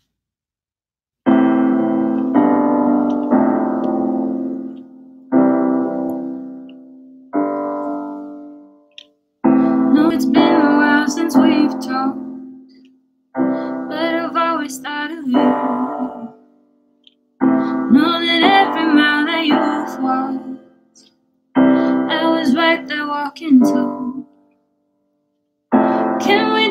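Piano playing slow chords, each struck and left to ring and fade, as a song's introduction. From about ten seconds in, a woman's voice comes in singing a melody over the piano in phrases.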